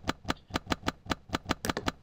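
A rapid, regular train of sharp clicks, about seven a second: the spikes of a simulated V1 neuron made audible, the cell firing because one set of lines in the plaid moves in its preferred direction.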